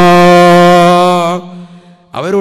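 A man's voice chanting through a microphone, holding one long steady note that breaks off about a second and a half in, leaving a faint fading tail.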